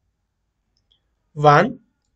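Silence, then a single short spoken syllable about one and a half seconds in.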